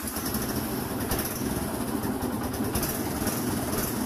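Yamaha Byson motorcycle's single-cylinder four-stroke engine idling steadily, just after being started on the electric starter.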